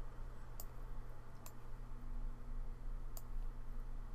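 Three computer mouse button clicks, the first two about a second apart and the third near the three-second mark, over a steady low hum.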